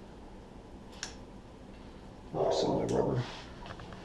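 A brief low, indistinct mutter or grunt from the man, with small clicks of parts being handled on the bike frame: one sharp click about a second in and a few more near the end.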